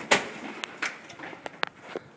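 A sharp knock about a tenth of a second in, then several lighter clicks and taps: a school hallway door with a metal push bar being shoved open, its latch and hardware clacking, amid scuffling.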